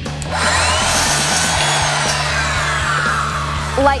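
Ryobi miter saw's motor starting with a rising whine and cutting through a thin craft board, then spinning down with a falling whine near the end. The board cuts easily, "like butter".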